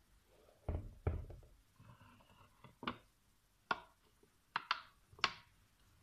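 Handling of an electric wafer maker: two dull knocks about a second in, then a series of sharp clicks as its lid is shut down over the batter-filled mould.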